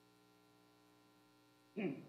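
Faint steady electrical mains hum on the sound-system feed, with a short burst of sound near the end.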